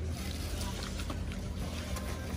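Restaurant room noise: a steady low hum with faint background chatter and a few light clicks.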